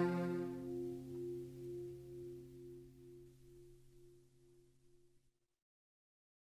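The last strummed chord of an acoustic guitar ringing out and fading away. Its high notes die within the first second and the low notes last until the sound cuts off into silence about five seconds in.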